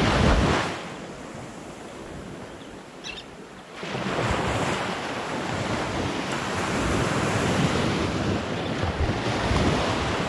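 Small shore-break waves breaking and washing up the sand, with wind buffeting the microphone. The surf is loud at the start, drops for about three seconds, then swells up again from about four seconds in and stays steady.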